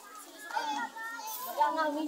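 Many children's voices chattering and calling out at once, overlapping with no one voice clear.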